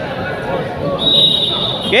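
Referee's whistle blown once, a steady high tone lasting about a second in the second half, over crowd chatter. It signals the serve for the next rally.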